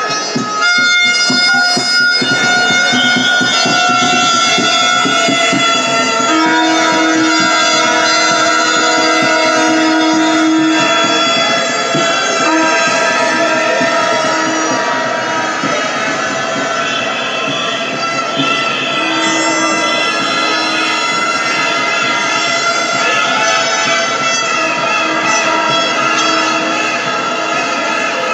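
Loud, continuous din of a protest crowd's air horns and whistles, many long steady tones at different pitches overlapping and starting and stopping.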